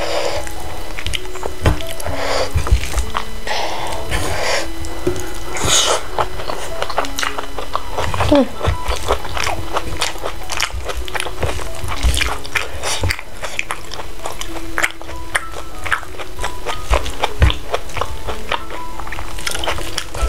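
Close-up eating sounds: chewing, wet mouth clicks, and fingers working rice on a plate. Under them runs soft background music, a slow line of held notes.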